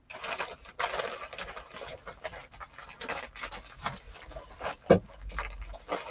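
Irregular rustling and crinkling of a shipping package being handled, with small clicks mixed in.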